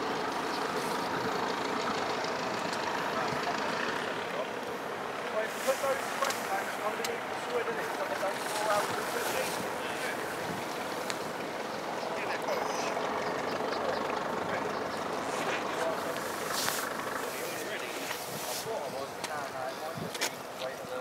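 Indistinct chatter of several people talking over a steady outdoor background noise, with a few short knocks and clicks.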